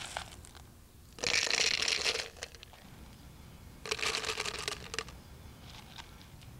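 Small pebbles clattering against plastic as they are dropped into a cut-off plastic bottle: two handfuls, each a rattle of about a second, the second some two and a half seconds after the first.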